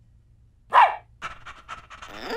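Cartoon dog voice: one short, loud bark with a falling pitch under a second in, then quick rhythmic panting at several breaths a second.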